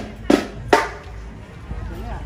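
Two sharp strikes on marching band percussion, about half a second apart and each ringing briefly, followed by a low background hum.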